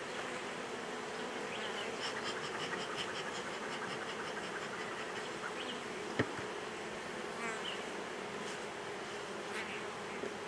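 Honey bees buzzing around an open hive in a steady hum, with a single sharp click about six seconds in.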